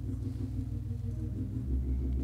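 Church organ holding soft sustained low chords, moving to a new chord about one and a half seconds in.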